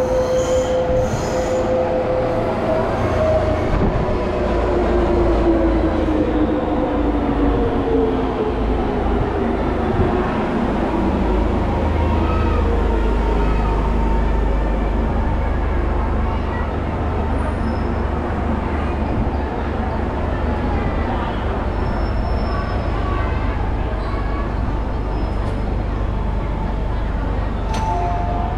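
MTR Disneyland Resort Line electric train pulling in alongside the platform and slowing, its motor whine falling steadily in pitch over the first dozen seconds above a constant rumble of wheels and running gear.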